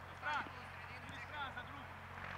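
Distant shouts and calls of young players across a football pitch: short raised voices, the loudest about a third of a second in, over a steady low hum.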